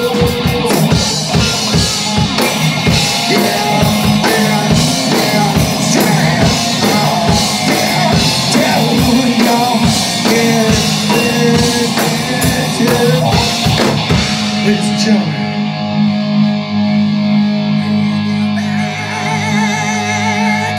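Live rock band playing in a bar: electric guitar, bass and drum kit, with a singer. About three-quarters of the way through the drums stop and held guitar notes ring on alone.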